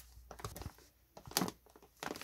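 Faint handling noise: a few short rustles and taps as a plush toy is moved about by hand over plastic packaging.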